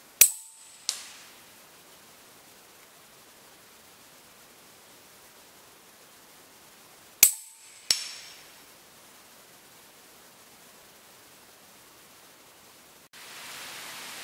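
Two shots from a Huben K1 PCP air rifle firing .22 cast lead slugs, about seven seconds apart. Each crack is followed about two-thirds of a second later by a fainter, sharp smack: the slug striking a hanging target about 100 m downrange.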